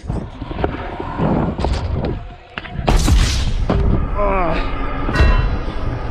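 Stunt scooter crash: the scooter rolls on the ramp, then a heavy thud about three seconds in as rider and scooter hit the concrete during a failed whip attempt.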